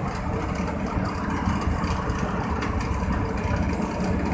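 Steady engine and road noise of a vehicle driving along a highway, heard from inside the vehicle.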